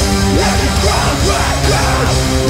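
Metalcore band playing at full volume: rapid kick-drum and kit hits under sustained distorted guitars, with a screamed vocal that slides in pitch.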